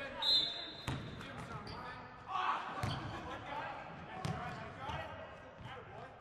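Basketball practice in a gym: a ball bouncing on the hardwood floor in a few sharp knocks, with players' voices calling out and echoing in the hall. A short, shrill high tone sounds just after the start.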